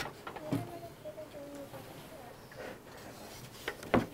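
Wooden skin-on-frame kayak frame being turned over and set down on a table: a few light wooden knocks, then one sharp knock near the end as it comes down.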